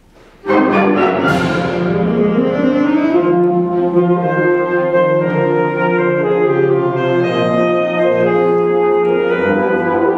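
A concert wind band starts to play about half a second in, with a sudden loud full-band chord and a crash, then goes on with sustained wind and brass chords.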